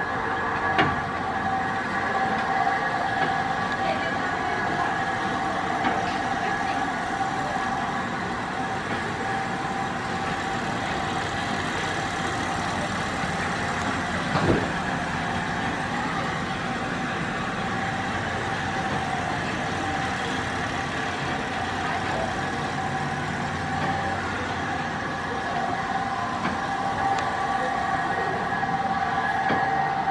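A train standing at the platform gives a steady mechanical hum with several high whining tones held level throughout. A single sharp knock sounds about halfway through.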